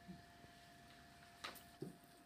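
Near silence: room tone with a faint steady hum, and a couple of soft clicks near the end.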